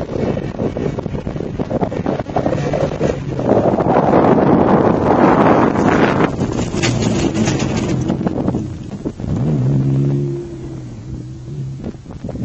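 Rally-raid SUV driving hard across a dirt field: its engine and tyre noise build to a loud pass close by about halfway through. Then the engine note settles into a steady hum as the SUV pulls away. Wind buffets the microphone.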